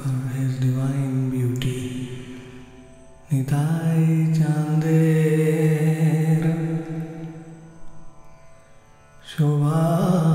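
A man's low voice singing a slow Bengali devotional song (kirtan) in long, drawn-out held notes; one phrase fades out, a new phrase starts about three and a half seconds in and dies away, and another begins near the end.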